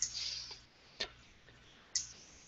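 Computer mouse clicking, three sharp clicks about a second apart, the first followed by a brief soft hiss.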